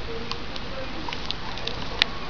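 Steady background hiss with a few faint light clicks, and a sharper click at the very end.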